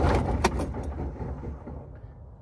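A 2006 Freightliner Columbia's diesel engine being cranked by the starter without catching; the low rumble dies away over the first second and a half as the key is let go. A sharp click about half a second in and another just under a second in come from the key and the keys jangling on its ring.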